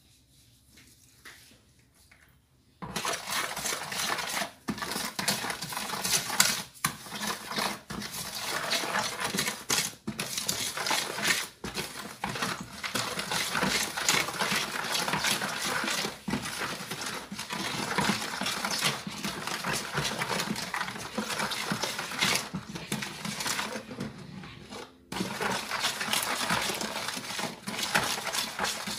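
A metal utensil clinking rapidly and continuously against a bowl, starting about three seconds in, with a short pause near the end.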